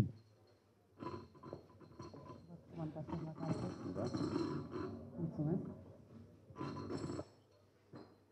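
Faint, indistinct murmured voices in a room, too quiet to make out, that cut off abruptly near the end.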